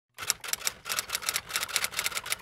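Typewriter keystroke sound effect: a fast, even run of clicks at about six or seven a second, starting just after the beginning.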